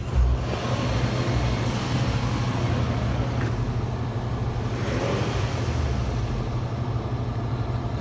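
2010 Scion tC's 2.4-litre four-cylinder engine idling steadily.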